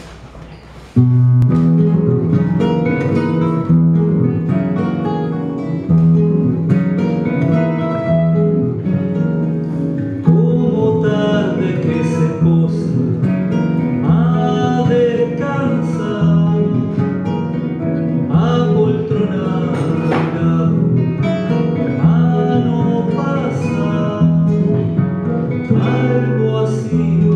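Live acoustic ensemble of three nylon-string guitars and a bandoneón playing. It starts suddenly about a second in, with plucked guitar notes over the bandoneón's held tones, and a man's voice singing along.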